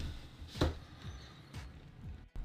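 A few light clicks and knocks as a small LED test circuit board is handled and set down on foam, the sharpest about half a second in.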